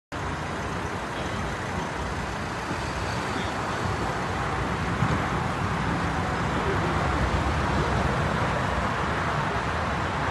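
Steady outdoor background noise with a low rumble, like road traffic heard from a car park. There is a small thump about five seconds in.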